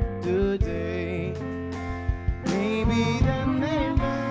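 Live rock band playing: electric guitar and drums over a steady low bass line, with a man singing in the second half.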